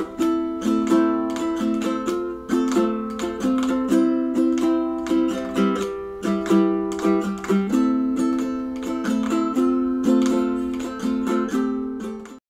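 Ukulele music: a tune of strummed chords, each ringing and fading before the next, in an even rhythm.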